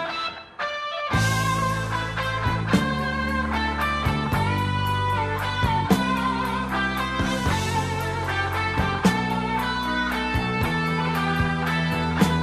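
Instrumental section of a rock song: an electric guitar plays a melodic lead line with long held notes over bass and drums. The band drops away briefly just under a second in, then comes back in.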